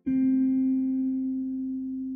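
Guitar music: one note plucked at the start, ringing and slowly fading.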